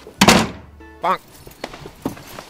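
One heavy thunk on a wooden panelled fitting-room door about a quarter second in, followed by a brief pitched sound and a short vocal sound about a second in.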